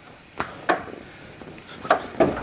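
Three sharp knocks from the hanging handholds of an overhead wooden-beam obstacle as a climber grabs and swings along them, two close together and one near the end.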